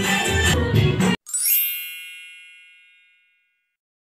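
Folk dance music for about the first second, cut off abruptly. Then a bright chime sound effect sweeps upward and rings out, fading away over about two seconds.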